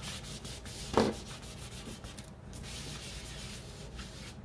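A cloth pad rubbed back and forth over paper-covered cardboard, working sprayed ink into the collage with a steady dry scrubbing. A brief louder sound comes about a second in.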